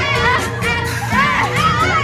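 A group of people shouting and cheering together over loud music with a heavy bass line.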